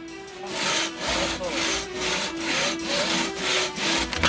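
Hand crosscut saw cutting through a log, its teeth rasping through the wood in steady back-and-forth strokes, about two to three a second, starting about half a second in.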